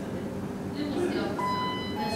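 Lift arrival chime: an electronic tone sounds about one and a half seconds in and holds for about half a second as the car reaches the floor and the direction arrow lights.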